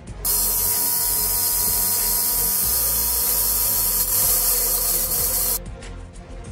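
Loud, steady hiss like a fiber laser cutting sheet steel with its assist-gas jet, with a faint steady tone underneath. It starts just after the beginning and cuts off abruptly about a second before the end.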